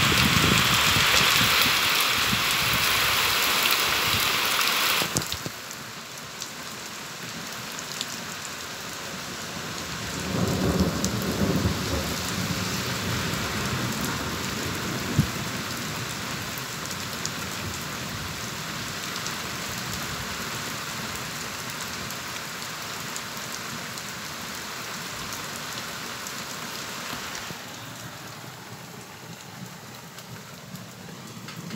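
Torrential rain pouring down in a steady, heavy hiss that drops suddenly in loudness about five seconds in. A low rumble of thunder swells around ten seconds in.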